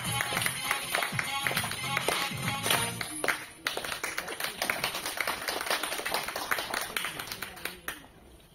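Audience applause, dense irregular clapping over the last bars of the song's accompaniment, with a short lull about halfway and stopping at the end.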